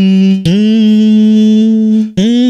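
A sampled hummed vocal note played on a software sampler, triggered on successively higher keys. Each note is one steady sustained tone, starting with a slight upward scoop. About half a second in, the held note is cut off by a slightly higher one: the sampler is in mono mode, and higher keys play the sample faster and so higher.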